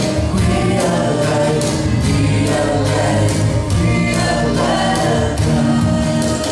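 Live acoustic music: a woman and a man singing together over acoustic guitars strummed in a steady rhythm.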